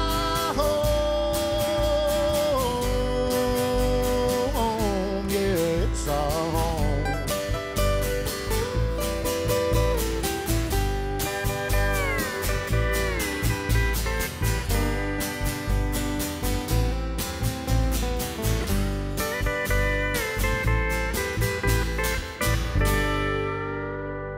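Acoustic country band playing the closing instrumental passage of a song: pedal steel guitar sliding between notes over acoustic guitar picking and upright bass. The music dies away near the end as the song finishes.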